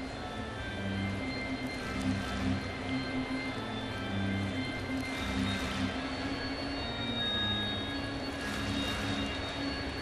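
Music with a moving low bass line playing over a ballpark's sound system, under steady crowd noise.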